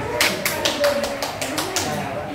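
Hand clapping, a quick run of sharp claps about four a second, over students' voices.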